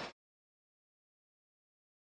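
Dead silence: the sound cuts off completely just after a man's voice ends at the very start.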